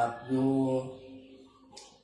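An elderly Buddhist monk chanting a blessing into a microphone in a low, steady-pitched voice, with held notes that fade out about a second in. A short hiss near the end.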